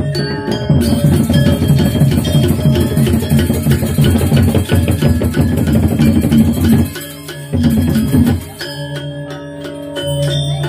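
Balinese gamelan playing a fast, loud passage of rapid struck metallophone and drum strokes. About seven seconds in it breaks off, comes back in a short loud burst, then settles into softer, ringing sustained tones.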